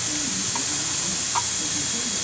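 A steady, high-pitched hiss of background noise with no change in level.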